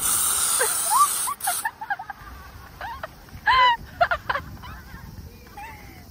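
Aerosol spray can hissing into the vent fan of a fan-cooled jacket in one long burst of about a second and a half, broken by a short gap near its end.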